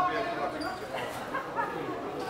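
Indistinct background chatter: several people talking quietly at once, no clear words.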